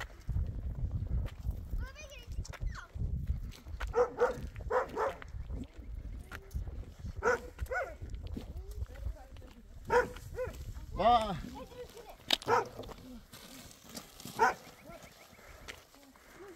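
A dog barking in short calls every second or two, mixed with people's voices.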